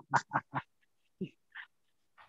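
A person laughing: a quick run of short 'ha' pulses, about five a second, that stop just over half a second in, followed by a couple of faint short sounds.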